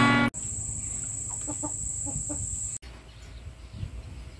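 A chicken clucking: a quick run of about five short calls over a steady high hiss. After a sudden cut, quieter outdoor background noise follows.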